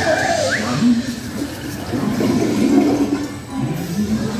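Toilet-flush sound effect from the ride's soundtrack, a rush of water that is strongest in the first second, over the ride's background music.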